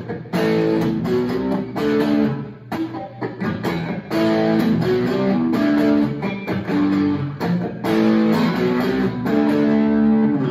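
Handmade hollow-body electric guitar with low-output pickups, played through distortion: chords strummed and held, broken by a few short gaps.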